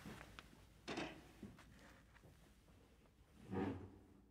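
A few faint footsteps and soft thumps on a wooden parquet floor, one about a second in and a louder one near the end.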